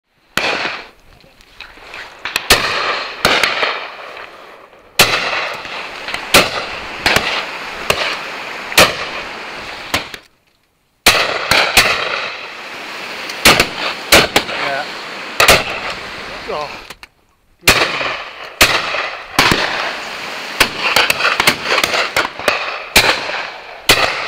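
Shotgun shots at game birds, many in succession at irregular intervals, some close and loud and others fainter and farther off. Voices come in between, and the sound drops out twice for under a second.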